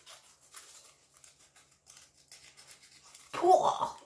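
Kitchen foil wrapped around a small metal find being rubbed and scrunched between the fingers, a faint, rapid scratchy rustle. A woman starts speaking near the end.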